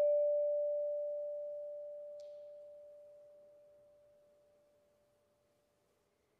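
A single bowed vibraphone note rings on and slowly dies away to nothing over about five seconds. There is one faint tick about two seconds in.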